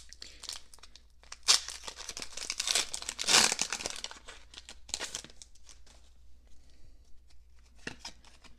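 A Pokémon booster pack's plastic foil wrapper being torn open by hand. There is a sharp snap about a second and a half in and a loud rip a little past the middle as the wrapper is pulled apart, then lighter crinkling of the foil.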